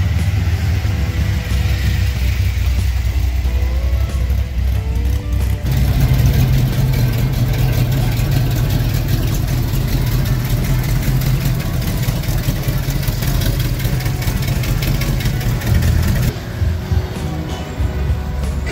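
Engines of classic cars driving slowly past at close range, one after another, over music playing in the background.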